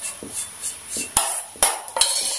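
Faint strokes of a silicone brush spreading oil over a pan, then two sharp metallic clinks of steel kitchenware, a little over a second in and about half a second later, each with a short ring.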